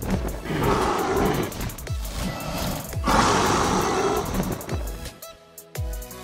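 Two long dragon roar sound effects, the first about half a second in and the second about three seconds in, over music with deep, falling bass hits.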